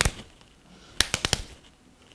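Hands clapping and slapping together in a hand game: one sharp clap at the start, then a quick run of four claps about a second in.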